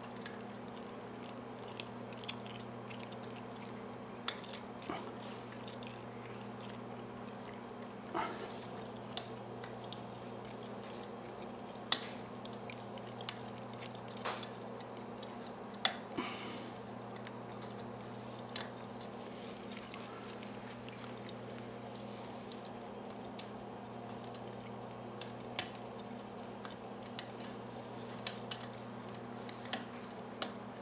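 Lock pick and tension wrench working the pin stack of a brass Brinks padlock fitted with spool security pins, single-pin picking: faint, irregular small metallic clicks and scrapes, a few louder clicks among them, over a steady low hum.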